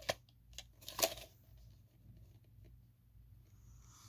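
Plastic VHS cassette being handled and turned over on fabric: a few sharp clicks and knocks in the first second or so, then faint rustling and handling noises.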